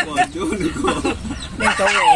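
A chicken clucking in a quick run of short calls through about the first second, with voices talking near the end.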